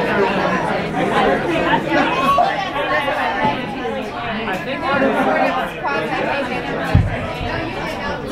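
Crowd chatter: many people talking at once in a club room, with one short low thump near the end.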